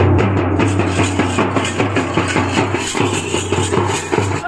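Large double-headed dhol drums beaten with sticks in a fast, dense rhythm, with brass hand cymbals clashing along.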